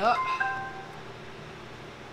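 A short electronic chime of a few notes from the Pyle P3001BT amplifier through its speakers, signalling that a Bluetooth connection has just been made. It is over within the first second, with a steady low background noise underneath.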